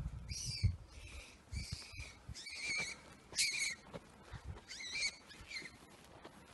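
A series of about six short, high-pitched animal cries, squealing with a bending pitch, coming every second or so.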